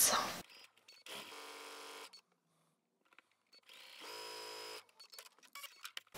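Electric sewing machine stitching a seam through quilt fabric in two short runs of about a second each, a steady motor hum, with a few light clicks near the end.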